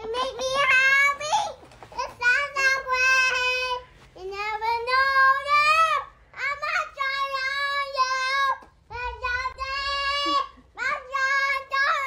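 A toddler singing a made-up song in long, high held notes that slide up and down. There are about six phrases with short breaths between them.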